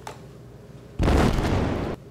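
A sudden low boom-like rumble about a second in, lasting about a second and cut off abruptly.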